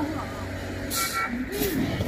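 Road traffic: a large vehicle's engine running steadily, with a short hiss about a second in.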